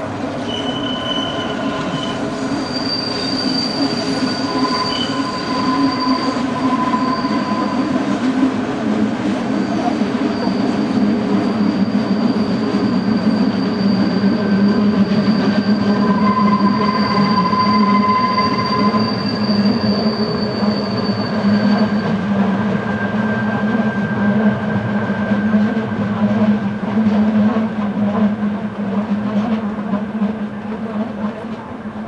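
Electric passenger train of the Rhaetian Railway's Bernina line running slowly around a tight curve, its wheels squealing against the rails. Several thin high tones come and go over a steady low rumble, and the highest squeal holds for most of the first two-thirds.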